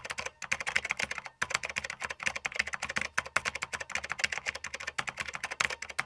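Rapid computer keyboard typing: a quick, even stream of key clicks with a brief pause about a second and a half in.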